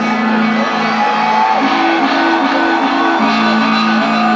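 Live rock band playing an electric guitar riff through a concert PA, recorded from within the crowd, with shouts and whoops from the audience over it.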